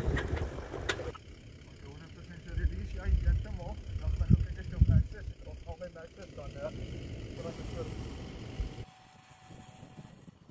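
Voices of people talking at a distance over an uneven low rumble that swells in the middle and drops away near the end.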